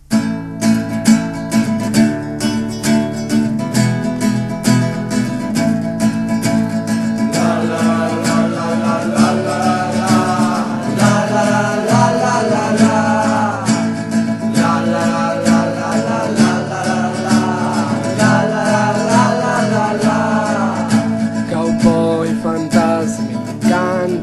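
Instrumental intro of a folk-country song: acoustic guitar strumming chords from the start, with a higher melody line whose notes bend in pitch joining about seven seconds in.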